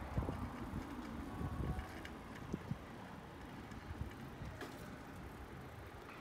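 Bicycle rolling along an asphalt street: a low, steady rumble of tyres and air on the microphone, with a few short knocks from the bike in the first three seconds.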